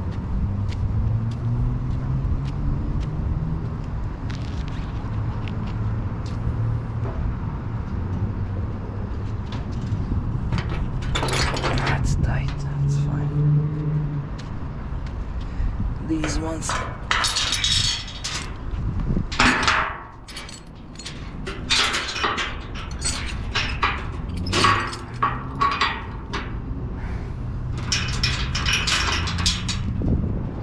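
A steady low engine hum from the truck, followed from about a third of the way in by repeated metal clanks and rattles as the car-hauler trailer's steel decks and chains are worked.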